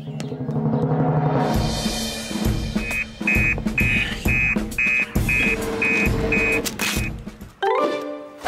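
Dramatic background music with deep drum beats about once a second, joined about three seconds in by a high beeping pulse that repeats about twice a second. It drops away shortly before the end.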